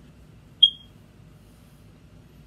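A single short, high-pitched beep about half a second in, over a faint room hum.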